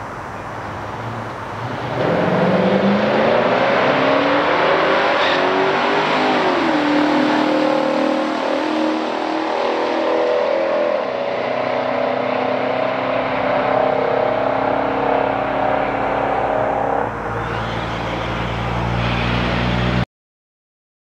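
A 1971 Chevelle SS454 with a 454 LS5 V8 and a 1969 Cutlass S with a 350 V8 launch at full throttle about two seconds in. Their engines rev up through the gears of their three-speed automatics, the pitch dropping at the upshifts about seven and eleven seconds in, until the sound drops suddenly near the end as they lift.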